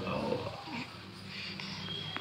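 Quiet sounds of an infant sucking on a milk bottle while being fed, with a short soft vocal sound under a second in and a small click near the end.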